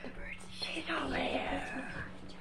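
Quiet, half-whispered speech too soft to make out, over a steady low hum.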